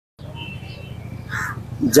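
A single short, harsh bird call about a second and a half in, over a low steady street background.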